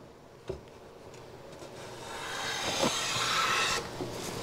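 WoodRiver No. 5-1/2 jack plane cutting a shaving along the edge of a red oak board in one stroke, growing louder over about two seconds and stopping abruptly near the end. The blade is advanced for a heavier cut to take down the high side of an edge that is out of square. A light knock comes about half a second in.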